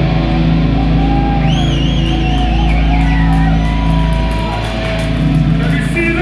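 Live slam/brutal death metal band playing: heavily distorted, low-tuned guitars and bass over drums and cymbals, with a high wavering squeal from about a second and a half in.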